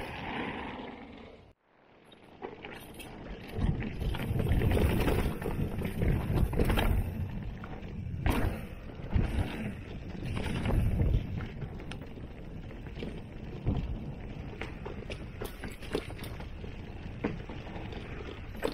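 Mountain bike riding down a rough dirt trail: tyres rolling over dirt, leaves and rocks, with knocks and rattles from the bike over bumps and wind rumbling on the microphone. A brief dropout to near silence comes about a second and a half in, and the rumble is heaviest in two stretches mid-way.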